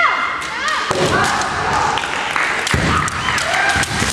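Women kendo fighters' high, drawn-out kiai shouts, with sharp clacks of bamboo shinai and a heavy stamping thud on the wooden floor about two-thirds of the way in.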